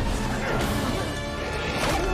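Film soundtrack mix: orchestral score under heavy crash and impact effects of a giant ape fighting a dinosaur, with a big crash about half a second in and another near the end.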